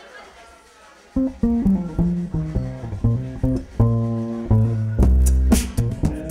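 Cello played pizzicato: after about a second of quiet, a quick funky line of plucked, ringing notes starts. Sharp percussive hits come in near the end.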